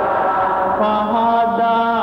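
Chant-like music of long, held vocal notes layered at several pitches, with a denser, brighter layer of tones coming in about a second in.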